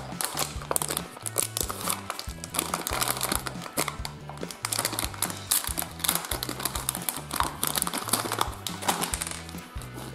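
Plastic toy blind-bag packet crinkling as hands open it, a dense run of crackles, over background music with a repeating bass line.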